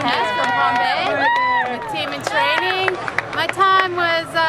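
Speech: a girl talking in a fairly high voice, continuously.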